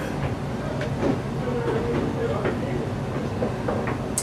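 Steady low rumble of room noise in a small bar, with faint voices murmuring in the background and a few light clicks.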